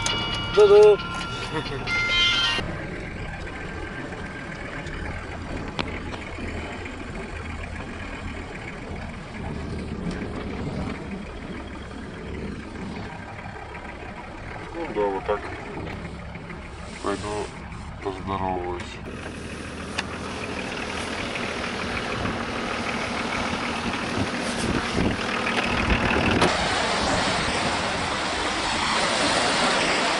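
Steady engine and road noise inside the cab of a Volkswagen LT truck, with brief voices in the middle. Near the end it gives way to waves breaking on a shore, with surf and wind growing louder.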